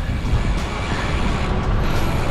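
Wind rushing over the microphone of a camera mounted on a moving road bike, a steady noisy rumble heaviest in the low end.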